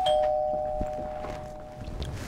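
Two-note ding-dong doorbell chime: the lower second note sounds right at the start, and both notes ring on and fade away over about a second and a half.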